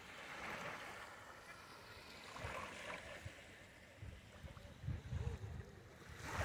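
Faint small waves washing in on a sandy shore, swelling twice, with a few low bumps near the end.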